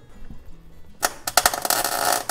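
MIG wire-feed welder striking an arc about halfway in and crackling steadily as it lays a bead on steel. Too much heat is going in, so the weld is burning holes through the metal.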